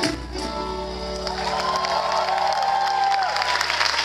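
A live samba band ends the song with an accented final hit and a held chord that rings out, with a long drawn-out vocal note over it. Audience applause and cheering build up near the end as the chord fades.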